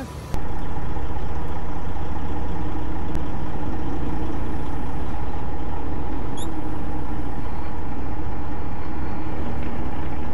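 Semi-truck engine running steadily, heard from inside the cab through a dashcam microphone as a constant rumble and hum that cuts in suddenly just after the start.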